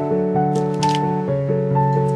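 Background instrumental music: a melody of held notes that step from one to the next every fraction of a second.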